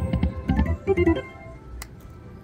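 Cash Crop video slot machine playing its short electronic chime notes as the reels spin and stop, a quick run of notes in the first half, then a single sharp click near the end.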